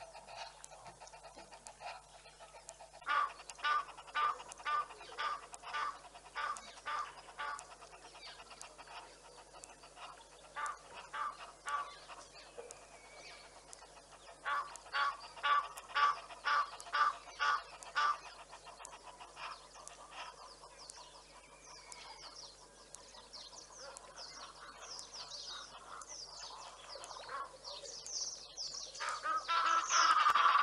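A bird calling in three series of short, evenly spaced notes, about two a second, with faint chirps of small birds near the end.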